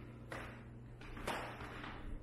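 Quiet empty-room tone with a low steady hum, and two soft rustling noises about a second apart from the person filming moving about as the camera pans.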